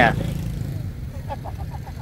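Steady low rumble of street traffic, motorbikes passing on a nearby road, with faint voices in the background.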